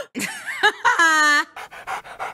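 A dog whines with a held, slightly falling call, then pants in quick short breaths near the end.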